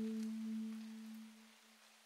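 The end of a guitar background-music track: the last plucked guitar chord rings out as a low sustained note and fades away to silence about a second and a half in.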